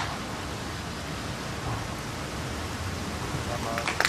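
Steady, even outdoor hiss of course ambience picked up by a greenside microphone, with no distinct putter strike or other event standing out.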